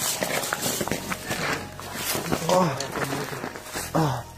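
Hurried footsteps with rustling handling noise as people rush out of a room, and a short voice about two and a half seconds in.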